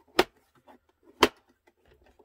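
Two sharp clicks about a second apart as the hinged side sections of a monitor riser stand are swung out to extend it, with faint handling noise between.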